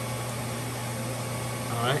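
Steady low hum with the even whir of cooling fans from a running APC Symmetra LX UPS cabinet.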